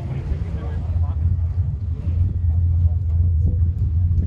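A steady low engine rumble, with indistinct voices over it in the first couple of seconds.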